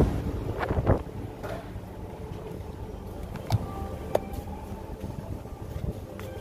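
Dining-room ambience at a breakfast buffet: a low rumble, louder in the first second, with a few sharp clinks of tableware. Two of the clinks ring briefly, about three and a half and four seconds in.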